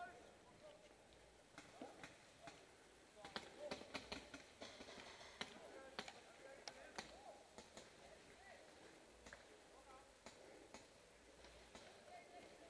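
Near silence: faint distant voices with scattered soft clicks and knocks at irregular intervals, a few of them sharper in the middle.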